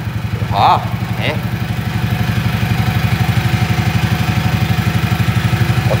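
Go-kart engine idling close by with a steady, even pulsing beat, growing slightly louder. A brief voice sound comes just under a second in.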